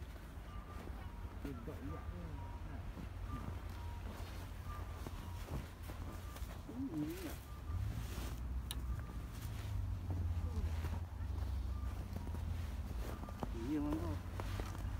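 Outdoor winter ambience: a low, steady rumble of wind and handling noise on a phone microphone, with a vehicle's reversing beeper repeating a short high beep over and over. Boots tread through deep snow, and faint voices come and go.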